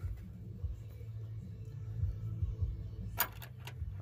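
Low steady hum with faint background music; about three seconds in, a quick run of four or five ratchet clicks as the socket wrench works the sway bar end-link nut.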